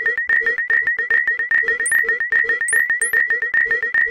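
Synthesized tones generated in Audacity: a rapid, even train of short clicky pulses carrying a steady high tone and a lower tone, several a second. About two seconds in, three brief high rising chirps join it.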